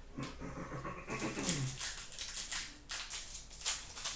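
Trading cards being handled and flicked through by hand, with a run of sharp papery flicks and slaps getting louder toward the end. Early on a short whining voice-like sound falls in pitch.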